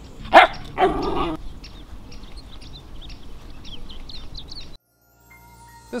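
A small dog barking twice in quick succession, followed by faint high chirps that cut off suddenly near the end.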